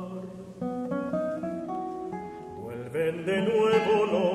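Two acoustic guitars playing a tango interlude: a rising run of plucked notes over a climbing bass line. A tenor's held sung note with vibrato comes back in near the end.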